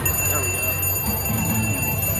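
Wheel of Fortune Gold Spin slot machine sounding a steady, high electronic ring that starts as the reels stop on the Gold Spin symbol. The ring signals that the Gold Spin bonus has been triggered.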